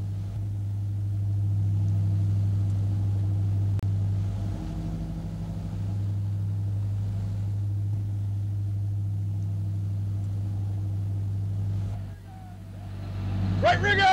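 Sport-fishing boat's inboard engines running steadily at trolling speed, a low, even drone, dipping briefly near the end.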